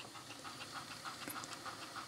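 Panasonic RQ-NX60V personal cassette player fast-forwarding a tape: the transport mechanism gives a faint, steady whir with a fast, fine ticking.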